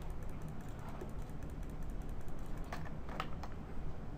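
Computer keyboard keys tapped about four times in quick succession near the end, as a new value is typed into a CAD dialog field, over a steady low background hum.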